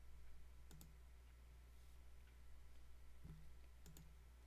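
Near silence with a few faint computer mouse clicks: one just under a second in and two or three near the end.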